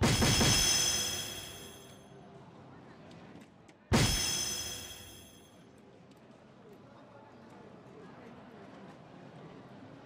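DARTSLIVE electronic dartboard sounding its hit effect twice, about four seconds apart, as soft-tip darts land: each a sudden bright ringing chime that fades over a second or two.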